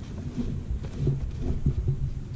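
Wind rumbling on the microphone, a low, uneven buffeting with little else on top.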